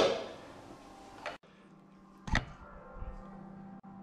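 A sharp clank of a metal saucepan being handled on the hob, followed by two lighter knocks about a second apart, over a faint steady hum.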